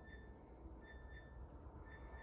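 Near silence: faint room tone with a low hum, and faint short high-pitched peeps recurring irregularly in the background.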